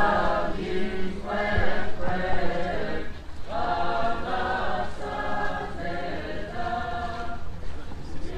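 Choir and procession voices chanting an Orthodox Easter hymn together, in sustained sung phrases of a second or two with short breaks between them, growing a little fainter in the second half.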